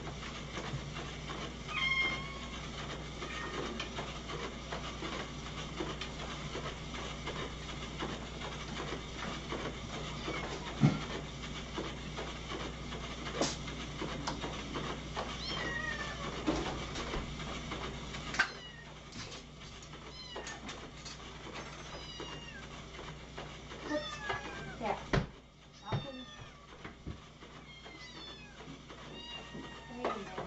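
A crowd of domestic cats meowing for food at feeding time, short overlapping meows coming more often in the second half. Under them a steady low hum cuts off about two-thirds of the way through, with a few sharp knocks.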